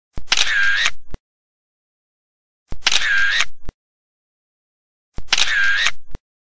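Camera shutter sound effect, heard three times about two and a half seconds apart, each about a second long, with dead silence between.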